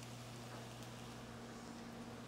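Faint room tone: a steady low hum with soft hiss.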